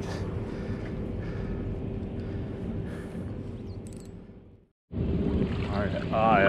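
Wind on the microphone, a steady low rumble with a constant hum running beneath it. The sound fades and cuts out briefly about four and a half seconds in, then returns.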